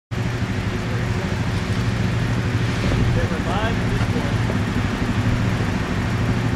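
ATV engine idling steadily, with a brief call from a person's voice about halfway through.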